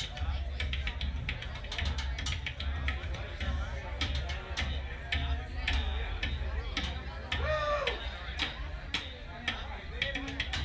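Live band percussion jam: a dense run of rapid drum strikes over a steady low rumble, with a short rising-then-falling pitched glide about seven and a half seconds in.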